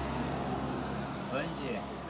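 Low steady rumble of a motor vehicle going by, strongest in the first half, with a faint voice heard briefly past the middle.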